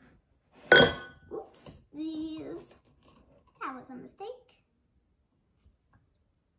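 A sharp clink of a metal measuring cup against a glass sugar jar as white sugar is scooped, followed by a girl's short wordless vocal sounds.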